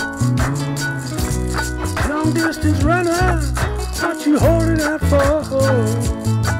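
Electric guitar playing a lead line with bent, sliding notes over a looped groove of a steady low bass line and an even shaker-like rattle, about four strokes a second.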